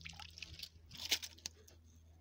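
Faint, scattered crunching and squishing of footsteps on damp leaf litter and pine needles, a few small crackles with one sharper one about a second in.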